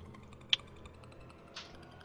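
Mostly quiet call audio with one sharp click about half a second in and a softer brush of noise later: a computer keyboard key being pressed.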